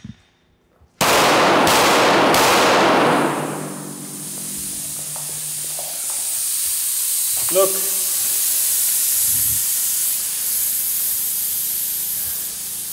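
A few pistol shots into a car tire, and air then hissing loudly out of the bullet holes from the start. After about three seconds the hiss settles into a steady high hiss: the tire is deflating fast through holes left by hollow-point bullets.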